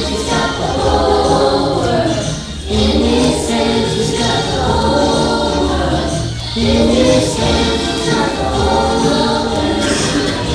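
A children's choir singing a gospel song together over instrumental accompaniment, in phrases of about four seconds with short breaks between them.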